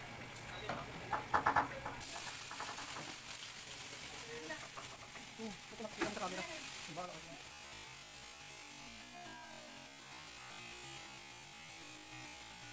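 Metal pan and utensil clanks as a stainless-steel pan of vegetables is tossed on the stove, then a steady sizzle of the vegetables frying.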